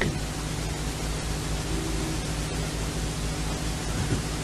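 Steady hiss of a recording's background noise with a low electrical hum underneath.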